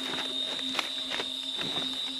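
A steady high-pitched trill of night insects, with a few faint knocks and rustles from a gutted deer being handled on a wooden pole, about a second in.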